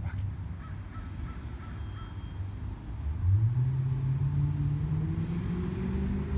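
A motor vehicle engine on the nearby street, with low steady traffic rumble; about three seconds in, a low engine note rises slightly in pitch and then holds, as a vehicle accelerates past.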